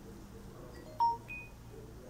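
A brief chime: one clear ringing tone about a second in, then a shorter, higher tone a third of a second later.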